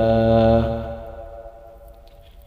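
A man's voice reciting the Quran in chanted tilawat style, holding the long final vowel of 'ilaynā' on one steady pitch. The held note tapers off about a second in, leaving a short pause between phrases.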